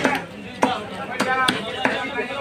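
A broad knife chopping through a rohu fish into a wooden chopping block: four sharp blows, roughly one every half second.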